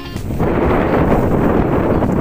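Wind buffeting an outdoor camera microphone: a steady, rough rumble with no distinct strikes, starting a moment after the music cuts out.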